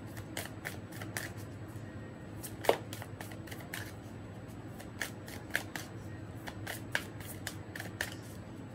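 A deck of tarot cards shuffled by hand, cards slipping and tapping against each other in irregular soft clicks, with one sharper snap a few seconds in.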